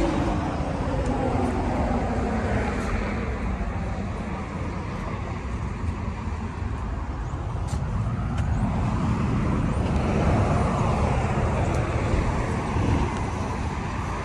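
Steady road traffic noise with a low rumble throughout.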